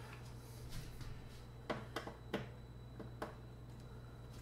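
About five sharp clicks and ticks of a screwdriver working the screws in a flat-screen TV's plastic back cover, over a low steady hum.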